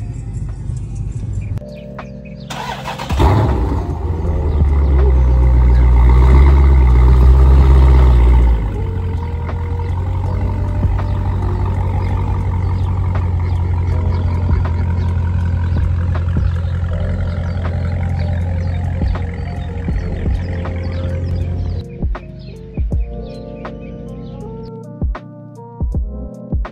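Background music over a Dodge Challenger's 6.4-litre Hemi V8. About three seconds in the engine starts and runs loudly for several seconds, then settles to a steady run; near the end the music carries on largely alone.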